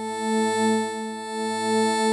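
Sustained pad from the Vital wavetable synth, held on the same pitches and swelling and dipping gently about once a second, with subtle unison detune on the first oscillator.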